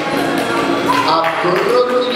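Voices of people at ringside calling out, with no clear words.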